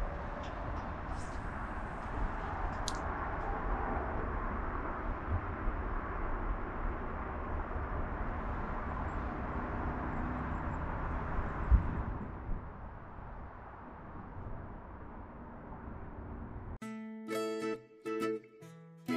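Outdoor ambience with wind on the microphone: a steady rushing noise with a low rumble, and one thump about twelve seconds in. Near the end it cuts abruptly to background music.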